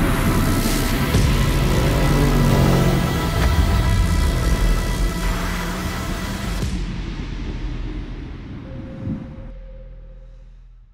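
Background music with a low rumble, thinning out about two-thirds of the way through and fading away toward the end.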